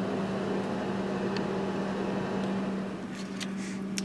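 Steady mechanical hum: one low, even tone over a constant hiss, from a running machine such as a fan or motor. There are a few faint light clicks near the end.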